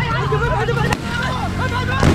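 Men's voices shouting and calling out over a steady low rumble, likely the original field audio of the footage.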